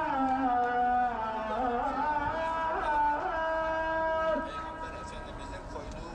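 A muezzin's call to prayer (ezan): one male voice singing long held notes that slide and waver in ornaments. The phrase ends about four seconds in and is followed by a quieter pause.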